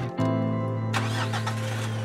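Sustained background music chords, with a pickup truck's engine starting and running from about a second in.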